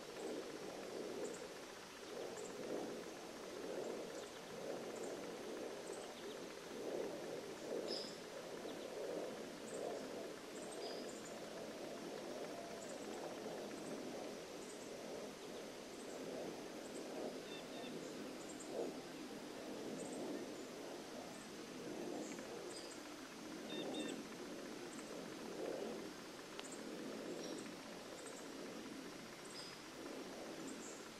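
Faint outdoor ambience: scattered small bird chirps and a faint high chirp repeating about once a second, over a low, uneven noise.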